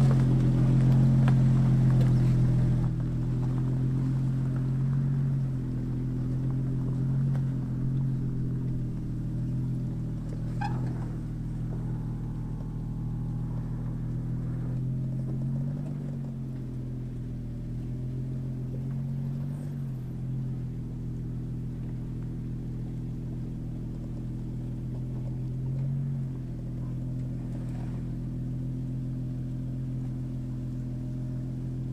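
Off-road SUV's engine running under load as it crawls up a rough dirt track, growing fainter as it climbs away, with the pitch rising briefly a few times as the throttle is worked over the ruts.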